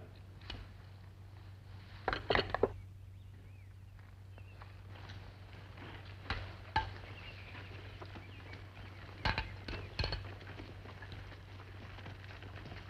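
A few sharp clicks and knocks of pistols being handled and set down on a wooden wagon bed, a cluster about two seconds in and more near the middle and later on, over a steady low hum.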